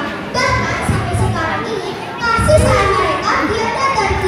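A young girl's voice speaking through a microphone and public-address loudspeakers, delivering a sermon in Indonesian.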